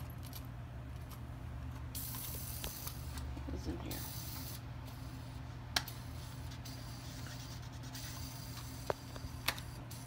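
Small metal jewelry and keyrings clinking and rattling in a wooden jewelry box as a hand sorts through them, with a few sharp clicks, the loudest a little past halfway and two more near the end.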